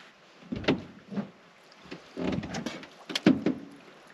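Several scattered knocks and clicks of handling in an aluminium fishing boat as an angler holds his rod.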